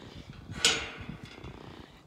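Domestic cat purring right at the microphone, a steady low pulsing. About half a second in there is a brief rustle.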